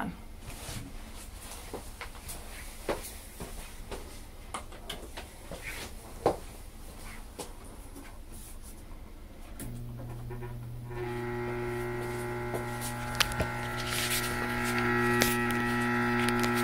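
Scattered small clicks and knocks, then the spectrum tube power supply is switched on about ten seconds in and gives a steady electrical hum that grows fuller with overtones a second later. The hum comes from the device vibrating as it drives the gas discharge tube.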